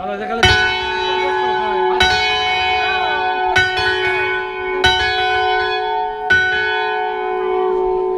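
A single large church bell swung full circle (volteo) on a trailer-mounted mobile bell frame, struck five times about every second and a half, each stroke ringing on in a long, steady hum that overlaps the next.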